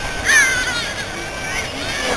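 A single loud, high-pitched cry about a quarter second in, falling in pitch and trailing off within about a second, over the murmur of people's voices.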